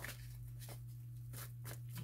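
Faint handling of a tarot deck: cards rubbing and sliding against each other in the hands, with a few soft rubs over a steady low hum.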